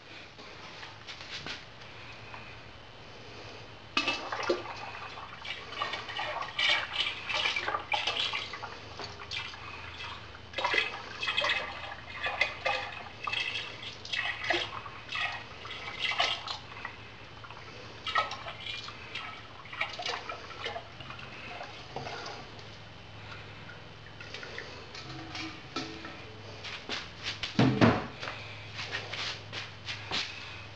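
Wort being poured through a funnel into a fermenter: liquid splashing and dripping in irregular spurts. A single louder thump comes near the end.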